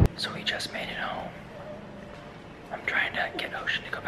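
A man whispering.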